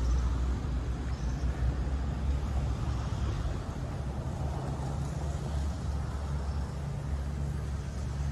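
A vehicle engine running steadily at low revs, a deep even rumble.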